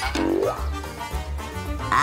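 Background music with a short rising tone near the start, over gulping as someone drinks from a bottle.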